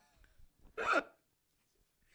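A man's short laugh, a single burst about a second in, with near quiet around it.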